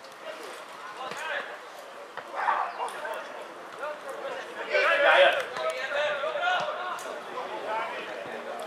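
Shouts and calls from football players and onlookers across an open pitch, unclear as words, with the loudest shout about five seconds in, over a low background of chatter and faint scattered knocks.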